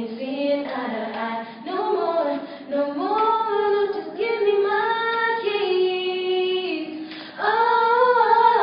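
Young girls' voices singing a cappella, with no backing track. Sung phrases are broken by short breaths, one long held note runs through the second half, and a louder new phrase starts near the end.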